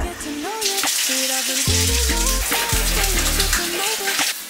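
Water spraying from a handheld shower head onto potted plants in a bathtub: a steady hiss that starts about half a second in. A pop song plays underneath.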